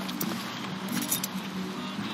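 Light metallic clicks and jingling from a small keyring lying on and being picked up from paving stones, over a steady low street hum.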